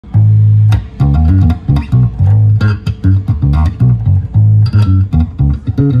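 Fender electric bass guitar played fingerstyle: a line of plucked low notes, some held for about half a second and others short and quick, with sharp attacks from the fingers on the strings.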